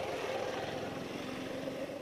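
A motorcycle riding past close by, its engine running with a steady hum.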